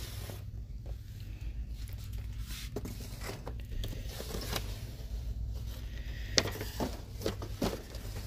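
Boxed merchandise being shifted by hand on a metal store shelf: scrapes and a few sharp knocks of cardboard boxes against the shelf, the loudest about six seconds in, over a steady low hum.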